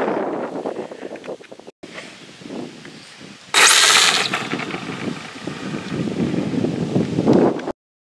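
Wind on the microphone, then about three and a half seconds in a sudden loud burst as an RC pro mod drag car launches: its Traxxas Velineon 3500kV brushless electric motor gives a rising whine, and the sound eases off as the car runs away.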